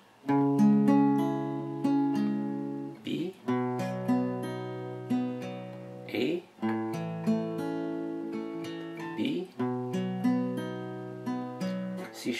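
Acoustic guitar picking a slow chord progression, C sharp minor, B, A, B, about three seconds per chord. Single notes are picked one after another and left ringing over each other.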